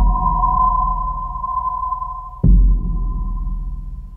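Suspense film score: a sustained high, ping-like drone tone over a low rumble, with a sudden deep bass boom at the start and another about two and a half seconds in.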